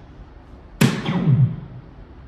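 A dart hitting an electronic soft-tip dartboard, a sharp hit about a second in, followed by the dart machine's scoring sound effect falling in pitch and fading within a second.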